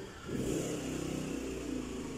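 A motor engine revs up about a third of a second in, then runs on at a steady pitch.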